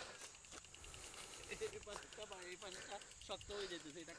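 Faint, distant talking over low background noise.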